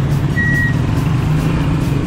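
A road vehicle running steadily on the road, heard from inside as a loud, even low hum. A single short high beep sounds about half a second in.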